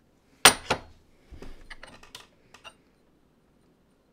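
Small red clay teaware clinking and tapping, the teapot and its lid being handled: a sharp clink about half a second in, a second one just after, then a few lighter taps.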